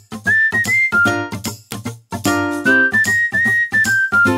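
Outro jingle: a whistled tune stepping between short notes over clipped, rhythmic backing chords, with a brief pause about halfway.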